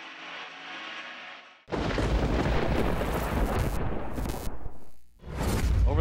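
A loud, deep booming and rushing transition sound effect cuts in about two seconds in after a faint stretch of arena noise, drops out briefly near the end, and hits again with a second deep boom.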